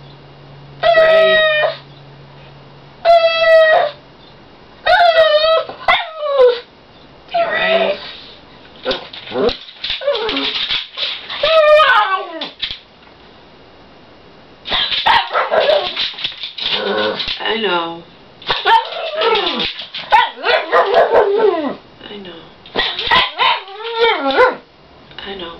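A pug barking at its owner in high, drawn-out calls, each under a second long. At first they come about every two seconds; in the second half they come faster and run together.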